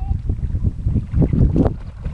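A front-crawl swimmer's arm strokes splashing in open water, with irregular splashes, the strongest about a second and a half in. Wind buffets the microphone throughout.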